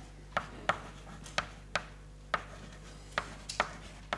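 Chalk writing on a blackboard: about eight sharp, irregularly spaced taps as the chalk strikes the board with each stroke.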